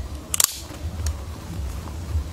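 A short rapid burst of sharp clicks, like a camera shutter, about half a second in, followed by a fainter single click, over a steady low rumble.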